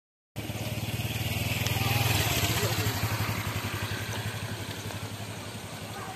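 Motorcycle engine running with a steady low firing beat, growing louder to about two seconds in and then slowly fading.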